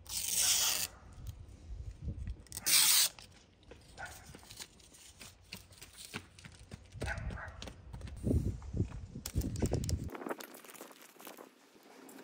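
Protective film being peeled off a small clear window panel: two short, loud ripping sounds in the first three seconds. Softer knocks and rustles of handling the wooden cabinet door follow later.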